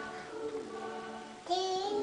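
A toddler's voice: faint drawn-out sung tones, then a short, louder, high-pitched vocalization near the end.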